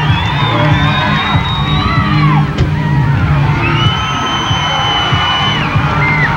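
Music with a steady bass line, with the crowd whooping and yelling over it. Long high-pitched whoops are held near the start and again past the middle.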